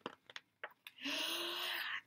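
A woman imitating the wind with her voice: a steady, breathy whoosh with a faint low hum under it, starting about a second in after a near-silent pause with a few faint clicks.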